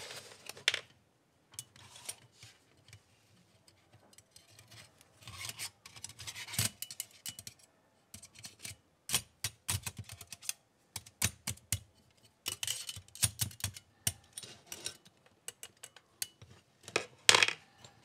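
Light metallic clicks, taps and scrapes of a folding metal camp stove's panels and wire mesh grate being handled and fitted together by hand. Sparse at first, then frequent small clicks from about five seconds in.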